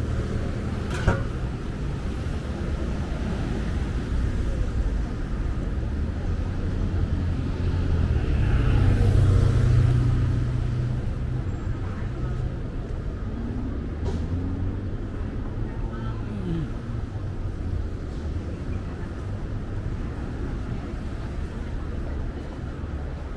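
Road traffic on a multi-lane city street: a steady low rumble of cars passing, swelling as a heavier vehicle goes by about eight to ten seconds in. A single sharp click about a second in.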